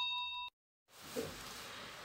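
Steady electronic beep-like tones at the tail of an intro jingle, fading and then cut off about half a second in; a moment of dead silence follows, then faint room tone.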